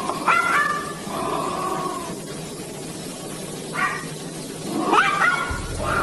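A dog barking in three short, high barks: one at the start and two close together near the end.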